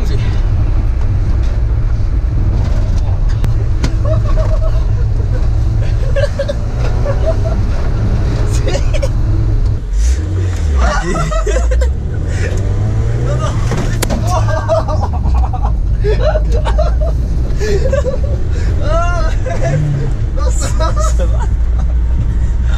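Citroën C15 van's engine and road noise, a steady low drone heard from inside the cabin while driving, with the engine note shifting in pitch around the middle. Voices and laughter sound over it.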